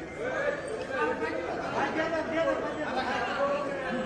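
Chatter of a crowd: several people talking at once, their voices overlapping so that no single speaker stands out.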